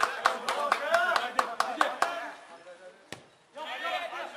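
Voices shouting on a football pitch, with fast, even hand-clapping, about five claps a second, over the first two seconds. Then it goes quiet apart from a single sharp knock about three seconds in.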